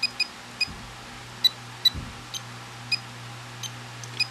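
Graupner MX-20 transmitter key beeps as its touch pad is pressed to step a setting: about eight short, high-pitched beeps at irregular intervals, over a faint steady low hum.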